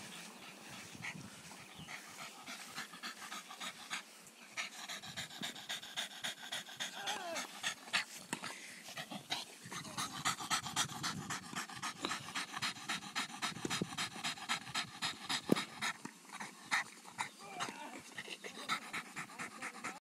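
Boston terrier panting rapidly and rhythmically, out of breath from running after a ball; the panting grows louder about five seconds in.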